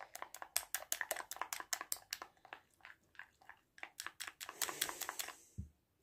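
Plastic spoon stirring a thick, creamy paste in a small glass bowl: rapid faint clicks and scrapes of the spoon against the glass, with a lull about halfway through before the stirring picks up again.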